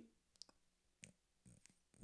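Near silence, broken by a few faint short clicks.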